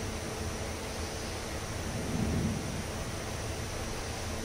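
Steady background hiss of room tone, with a faint low swell about two seconds in.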